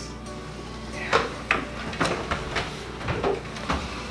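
Wooden dining chairs scraping and knocking as several people push back from a table and stand up: a run of about seven short scrapes and bumps starting about a second in, over background music.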